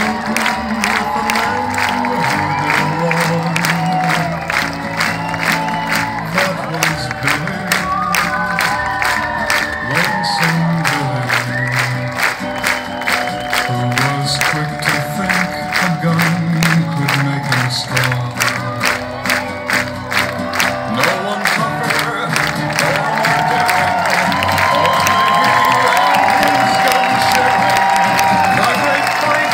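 Rock music played loud through a concert sound system, with a steady drum beat, bass and melody, and a crowd cheering along. It grows louder and thinner in the bass near the end.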